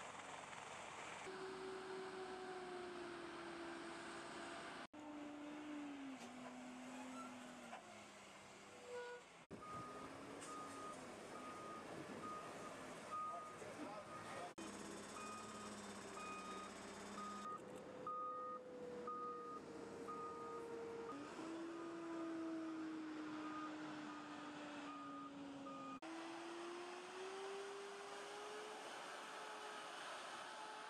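Heavy military truck diesel engines running, their pitch shifting between shots. Through the middle of the clip a vehicle's back-up alarm beeps steadily, about one and a half beeps a second.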